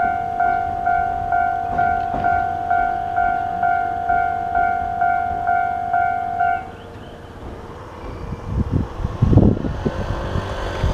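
Japanese level-crossing warning bell ringing, a repeated two-tone electronic ding about twice a second, the signal that the barriers are down. It cuts off suddenly about seven seconds in, and a low rumble rises near the end.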